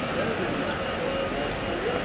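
Steady city-street background noise: a low traffic hum with faint, indistinct voices.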